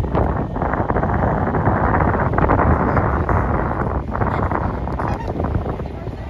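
Wind blowing across a phone microphone: a loud, uneven noise with no clear tone, heaviest in the low and middle range.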